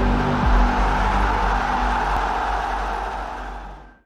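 Cinematic intro music: a deep sustained drone with a rushing, airy noise over it, fading out to silence near the end.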